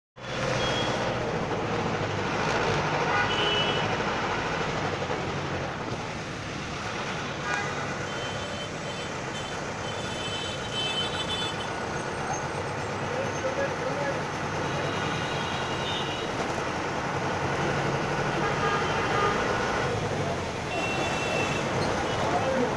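Ride inside an Ashok Leyland Stag minibus in slow city traffic: steady diesel engine hum and road noise, with vehicle horns tooting several times.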